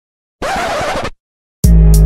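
A short burst of noisy, static-like glitch sound effect, lasting about three-quarters of a second between two silent gaps. Near the end, loud music with deep bass cuts back in.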